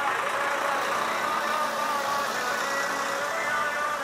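A tractor engine running as the tractor passes close by, under music with a wavering melody line at a steady level.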